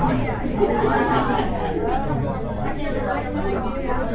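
Several people talking at once in a large room: overlapping conversation with no single clear voice.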